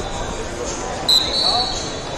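A whistle gives one sharp, high blast about a second in, lasting under a second, over the steady chatter of voices in a large hall.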